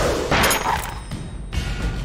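Animated-film action soundtrack: dramatic score under battle sound effects, with a deep boom right at the start and a burst of crashing noise about half a second in.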